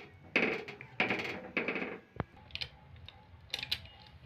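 Spoon stirring thick dal in a pan: three scraping strokes in the first two seconds, then a sharp clack about two seconds in and a few light clinks near the end.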